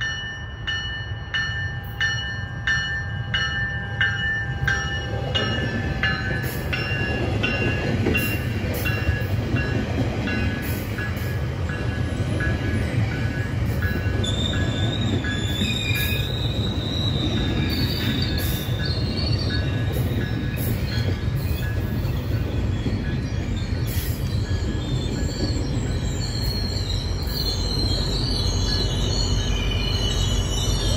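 GO Transit bilevel commuter train approaching and passing close by: evenly repeated bell-like strikes for the first few seconds, then a steady low rumble of wheels on rail that builds as the coaches go past. A high wheel squeal comes in about halfway through and again near the end.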